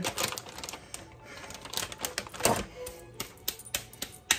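Plastic bag of frozen grated Parmesan crinkling and rustling as the cheese is shaken out by hand into a glass bowl, a string of quick, light clicks.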